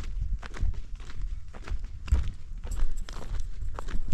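Footsteps on dry, stony dirt ground, a steady walking pace of a few steps a second, over a low rumble.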